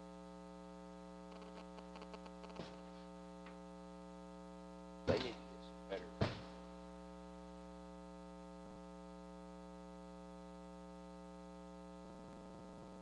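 Steady electrical mains hum on the audio feed, a low buzz with many even overtones. A few faint clicks come early, and two short louder noises come about five and six seconds in.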